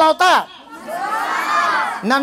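A group of boys' voices calling out together in one long chorus that starts about a second in, just after a single voice speaks briefly.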